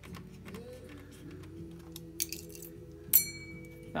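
Background music of steady held low tones, with one small, sharp metallic clink that rings briefly just after three seconds in, from tiny screws and a screwdriver on metal, and a brief scratchy rustle shortly before it.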